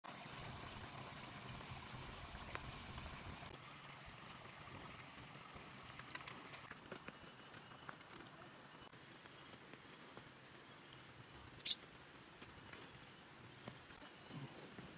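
Faint outdoor ambience: a steady, high-pitched insect drone that grows louder about nine seconds in, with a few soft clicks, one sharper near the end.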